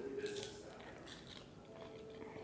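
A person eating, with faint chewing and mouth sounds. There are a few soft clicks in the first half second.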